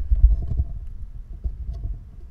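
Low, irregular rumble with a few soft bumps on a close microphone, the kind of handling noise made when the microphone or its stand is touched or moved.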